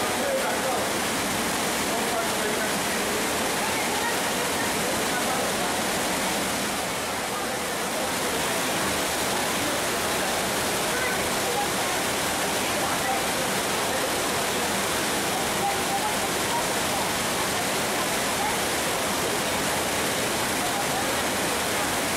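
Trümmelbach Falls' glacial meltwater rushing through a narrow rock gorge inside the mountain, a steady, dense roar of falling water echoing off the rock walls.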